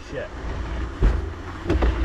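A man's brief exclamation, then low rumbling on the microphone with a dull thump about a second in and another near the end, typical of a handheld camera carried along a brushy trail.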